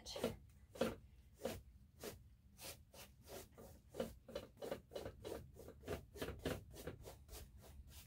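A small brush swept in quick strokes across the dry surface of an acrylic-pour canvas, a faint brushing swish about two or three times a second, dusting off hairs and specks before it is coated with resin.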